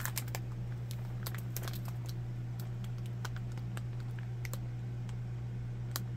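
Scattered light clicks and crinkles of a clear plastic bag being handled as it is held up, over a steady low hum.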